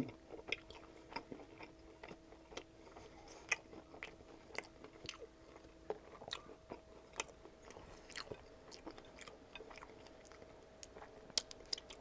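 Close-miked chewing of a sauced fried chicken cutlet: soft, wet mouth clicks and smacks scattered throughout, fairly faint.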